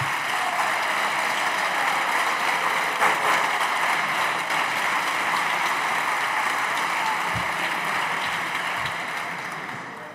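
Sustained applause from a large group of deputies in a parliamentary chamber, steady and dying down near the end.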